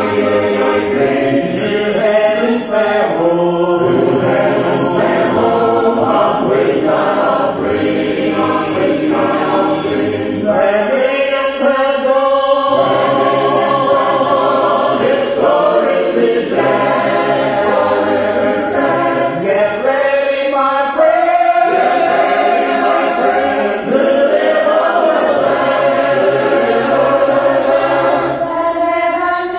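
A choir singing a gospel hymn a cappella, several voices in harmony with long held notes.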